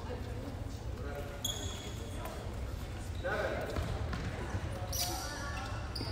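Voices echoing in a school gymnasium over a steady low hum, with a couple of short high squeaks, one near the middle and one near the end.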